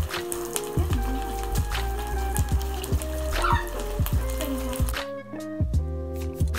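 Background music with a steady beat and sustained melodic notes.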